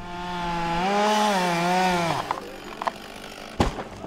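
Chainsaw cutting into a large tree trunk, its engine note rising slightly under load and then dying away about two seconds in. A few light knocks follow, then one sharp thump near the end.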